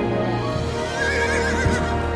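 A horse whinnying, one wavering high call about a second in, over film-score music with sustained tones.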